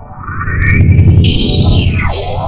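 Logo ident jingle run through heavy audio effects, distorted and chorused, swelling in loudness over its first second. Near the end a high tone slides steeply down.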